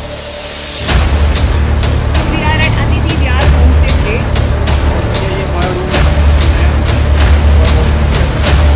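Cinematic trailer music: after a quiet opening, a deep bass and a steady beat of percussion hits come in about a second in, roughly two hits a second.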